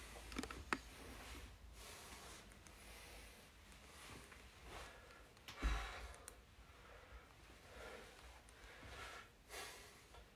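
A man breathing quietly through a single-leg exercise, with faint breaths every second or two. A soft, low thump comes a little past halfway, the loudest sound here.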